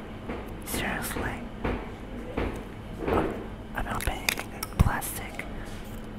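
Soft whispering close to the microphone, with plastic clicks and handling noise as the plastic opener cap is pulled off the top of a Ramune marble-soda bottle. A sharp knock about five seconds in is the loudest sound.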